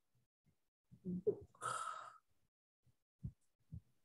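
A person's short breathy exhale into a microphone about a second and a half in, against quiet room tone, followed by a couple of faint low thumps.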